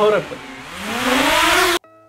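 DJI quadcopter drone's propellers whirring at close range, the motor pitch dipping and then rising as the sound grows louder, before cutting off abruptly near the end.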